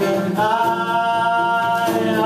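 Live singing of a folk-rock song over acoustic guitar, with one sung note held for about a second and a half.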